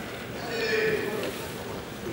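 A single drawn-out vocal call, about a second long, starting about half a second in, over the steady background noise of a large arena hall.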